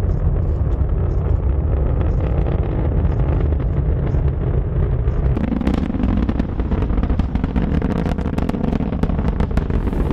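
SpaceX Falcon 9 rocket launch heard from the viewing area: a deep, steady rumble from the nine Merlin engines, growing louder and more crackly from about halfway through.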